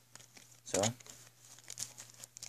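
Foil booster-pack wrapper being handled, giving a few short, sharp crinkles.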